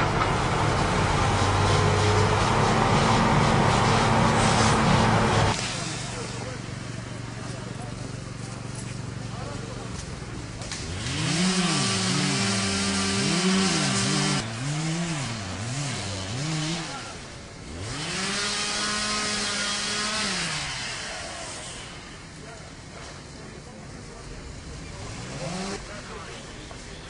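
A vehicle engine running steadily for about five seconds, cut off abruptly, followed by two spells of low wailing tones that rise and fall over and over, about one glide a second.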